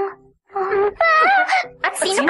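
A voice wailing in long drawn-out cries, with a brief break about half a second in.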